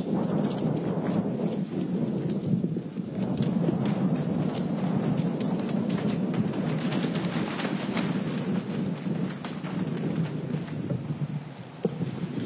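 Large crowd applauding: a dense patter of many hands clapping that swells as the greeting ends and dies away near the end.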